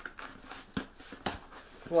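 A taped cardboard shipping box being worked open by hand: a few sharp clicks and scrapes of tape and cardboard, spaced irregularly.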